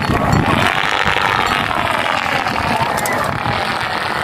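A large two-line stunt kite with a 3.3 m wingspan whooshing steadily as it tears through strong wind, over heavy wind buffeting on the microphone.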